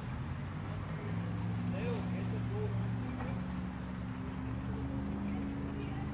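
Outboard boat engine idling steadily, a low even hum, with faint distant voices over it.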